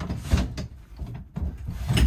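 Handling knocks and rubbing as the pop-up roof of a Taxa Cricket camper trailer is grabbed to pull it down: a few dull thumps, the loudest near the end, with rubbing in between.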